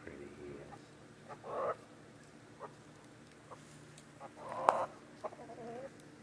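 Chickens clucking in short bursts, about a second and a half in and again near the end, ending with a wavering call. A sharp click cuts through the second burst.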